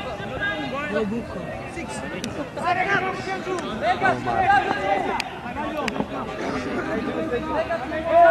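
Overlapping, indistinct voices of players and sideline onlookers calling out during play, quieter than close speech, with a few faint sharp clicks.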